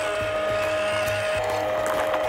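Background music over the steady whine of a small RC crawler's electric motor and gearbox, the FMS Toyota Hilux 1/18-scale crawler, as it creeps over loose gravel.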